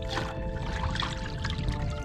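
Seawater pouring and sloshing into a plastic bucket as it is dipped into shallow water to fill it, under background music with steady held notes.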